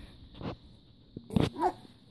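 A young baby's short vocal sounds: a brief breathy sound about half a second in, then a loud short burst and a quick squeaky coo that rises and falls.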